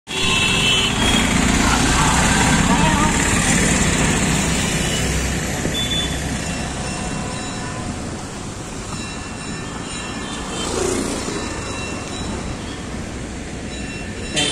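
Street traffic: vehicle engines and road noise, loudest in the first few seconds and then easing off, with voices in the background.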